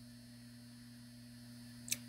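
Steady low electrical hum, with one brief sharp click near the end.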